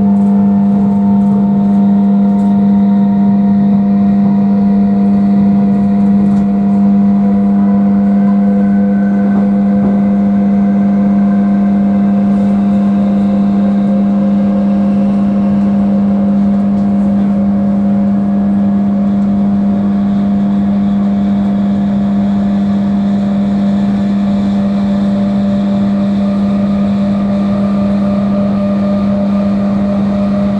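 Class 319 electric multiple unit heard from inside the passenger saloon while running. A strong steady low hum sits under several fainter whining tones that climb slowly in pitch as the train gathers speed, over a continuous rumble from the running gear on the track.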